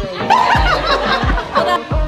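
Background music with a steady bass beat, about one beat every two-thirds of a second, under laughter from a crowd of guests.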